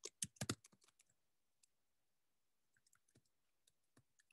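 Computer keyboard keystrokes: a quick run of key clicks in the first half second, then a few faint clicks near the end.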